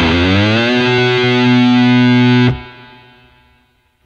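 Jackson electric guitar through a high-gain distorted amp: the B note at the seventh fret of the low E string is picked with the whammy bar pushed down, so the pitch scoops up into the note as the bar comes back up. It then holds steady for about two seconds before being cut off, leaving a faint fading tail.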